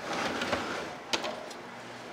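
Plastic cups being handled in a plastic crate: a soft rustle and two sharp clicks, the louder a little over a second in, over a steady low room hum.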